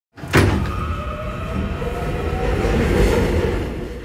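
Subway train sound effect: a sharp clunk just after the start, then a steady rumble with a faint, slowly rising whine, fading out near the end.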